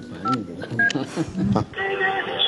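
Phone keypad tones as a number is dialled: short two-note beeps, about two a second, under talking voices. Near the end, music with singing starts.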